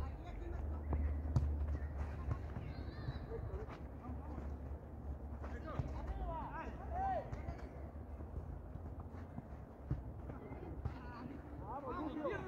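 Distant shouts of players during an outdoor football game, with a few sharp thuds of the ball being kicked, over a steady low rumble.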